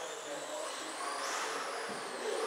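Electric 1/10-scale RC sprint cars running on the dirt oval, their motors giving a thin, high-pitched whine that climbs in pitch as a car speeds up, over indistinct voices.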